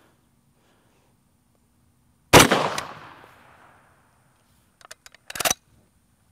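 A single shot from an M1 carbine firing .30 Carbine 110-grain military ball, a sharp crack a little over two seconds in with its echo dying away over about a second. A few short clicks and a brief knock follow near the end.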